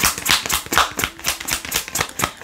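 A deck of tarot cards being shuffled by hand: a rapid, irregular run of small card clicks and flicks.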